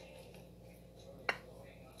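Quiet room hum while chicken is tossed in cornstarch in a glass bowl, with one short click of the fork against the bowl a little past halfway.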